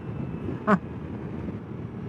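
Ducati Multistrada V4 Pikes Peak's V4 engine running at road speed under wind on the microphone, while the bike is downshifted with the quick shifter at neutral throttle. A brief sharp burst stands out about two-thirds of a second in.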